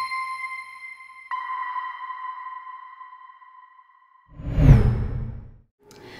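Intro logo sting. A bell-like chime rings and slowly fades, a second chime is struck about a second in, and near the end a whoosh swells and dies away.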